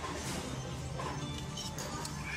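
Background music playing under a few sharp clinks of metal cutlery against dishes, the last ones with a bright ring.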